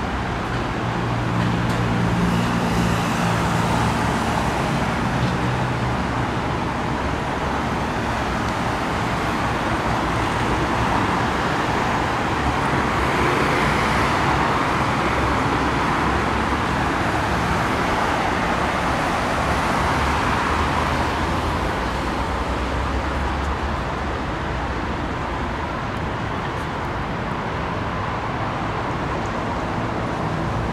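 Steady road traffic noise from passing cars, swelling louder in the middle as vehicles go by and easing off again. A low engine hum sits under it in the first few seconds.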